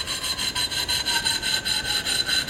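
A Magic Saw hand saw's diamond wire blade sawing a curve through tile, with rapid, even back-and-forth strokes. A steady high-pitched ring runs under the rasping strokes.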